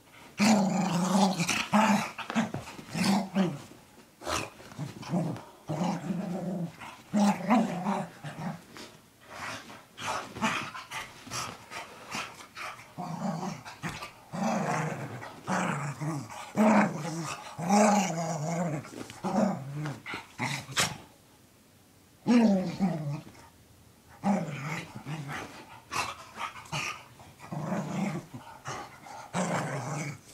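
A dog growls playfully in repeated short bursts as it rolls and rubs itself on its back in a post-bath frenzy. There is a brief pause about two-thirds of the way through.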